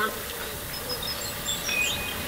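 Birds chirping: a few short, high chirps from about halfway in, over a steady faint hiss.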